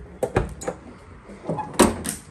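Key working the lock on a 1969 MGB-GT's rear hatch: a few light clicks in the first second, then one louder clunk near the end as the latch lets go.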